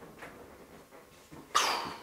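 Quiet room tone, then about a second and a half in a single short, sharp breathy huff of exhaled air that fades within half a second.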